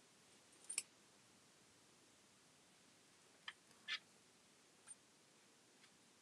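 Near silence, broken by a few faint small clicks of glass seed beads and the needle as a bead edging is stitched around a leather disc.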